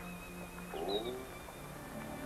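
Soft orchestral film underscore with held notes. About a second in comes a short falling cry of uncertain origin.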